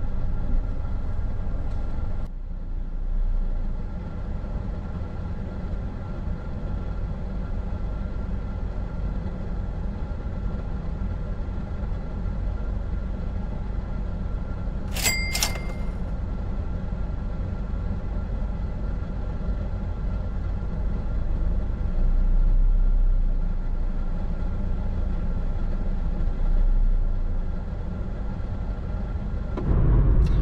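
Parked car's engine idling with a steady low hum, heard from inside the cabin. About halfway, two short, bright chimes ring about half a second apart.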